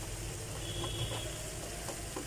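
Eggs, onion and chilies frying in oil in a non-stick pan, giving a low steady sizzle, with a few faint spatula scrapes as the egg is scrambled.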